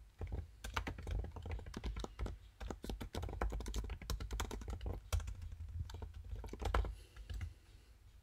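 Typing on a computer keyboard: a quick, uneven run of key clicks as a sentence is typed, stopping about a second before the end.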